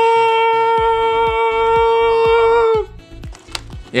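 A man's voice singing one long, held high note as a mock heavenly choir "aaah", with a slight wobble near the end; it cuts off about three seconds in. Soft clicks of the plastic blister packaging being handled follow.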